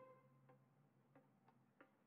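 Near silence: a solo violin note dies away at the start, followed by four faint, short clicks over the next second and a half.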